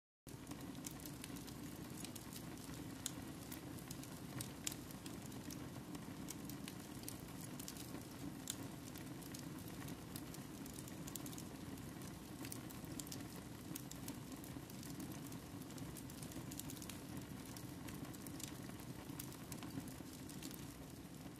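Faint crackling of a fire: a steady low hiss with scattered sharp pops and crackles.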